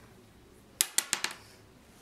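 A six-sided die rolled onto the gaming board, clattering and bouncing in about five quick clicks over half a second, about a second in.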